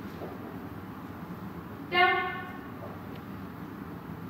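A woman's voice saying one short, flat-pitched word about halfway through, a trainer's command to her dog.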